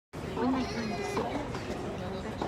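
Spectators' voices: several people talking at once, indistinctly, with one higher, wavering voice in the first second.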